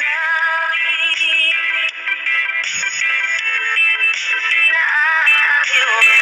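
Background music with a sung vocal line that has a processed, synthetic-sounding voice.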